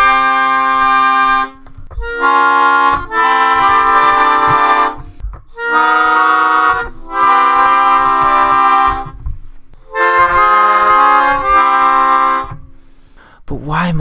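Melodica, a small keyboard free-reed instrument, playing a string of sustained chords in short phrases with brief breaks between them. The chords step through a progression that moves around the circle of fifths.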